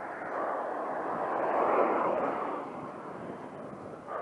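A car passing close by the rider, its noise swelling to a peak about two seconds in and then fading.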